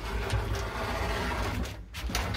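The folding lattice gate of an old lift, wooden slats on crossed metal straps, pulled shut by hand. It rattles and scrapes along its track for about a second and a half, then stops just before the end.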